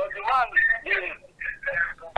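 A caller's voice over a telephone line, thin and narrow-sounding, in short broken phrases that the words cannot be made out of.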